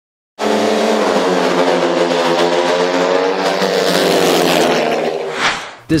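A racing engine running at high revs on a steady, slightly drifting pitch. It starts suddenly about half a second in and fades out over the last second.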